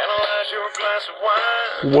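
An Eton hand-crank emergency radio, just switched on, playing a song with singing through its small speaker. The sound is thin, with no bass, and fairly loud.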